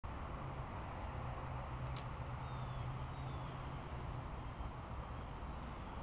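Steady outdoor background noise: a low hum under an even hiss, with a faint click about two seconds in and a few faint high chirps after it.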